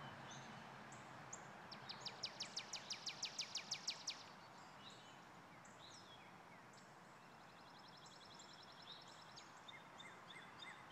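Wild birds calling in the trees over a faint steady outdoor hiss. About two seconds in, one bird gives a fast run of about fifteen sharp high notes lasting two seconds; later a quieter rapid trill follows, with short chirps scattered throughout.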